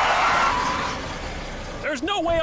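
Cartoon chase sound effect: a loud, noisy rush that fades away over the first second or so.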